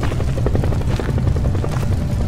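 Helicopter rotor beating rapidly and steadily over a constant low rumble.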